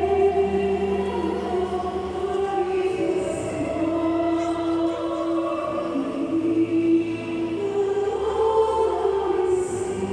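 Church choir singing a slow hymn in long held notes, with a low sustained accompaniment under the first and last couple of seconds.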